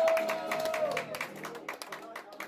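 A live flamenco group finishing a song: a long held note dies away about a second in while sharp hand claps go on, and the whole sound fades out.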